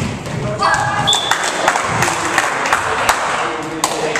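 Volleyball rally in a gym: several sharp ball hits and thuds ring through the hall, mixed with players' shouts and calls.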